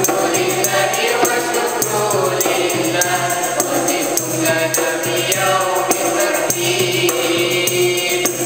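A choir singing a school song in unison over a steady percussion beat.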